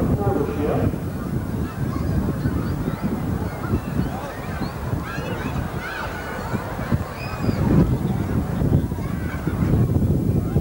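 Outdoor ambience picked up by a camcorder: wind buffeting the microphone, with many short high calls scattered through it.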